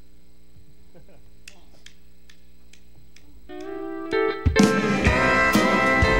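Country band starting a song: after faint, evenly spaced ticks over a low hum, a held guitar chord comes in about three and a half seconds in, and a second later the full band with drums and guitars enters loud.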